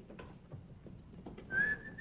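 A single whistled note, held steady for about half a second near the end, after a quiet stretch with a few faint clicks.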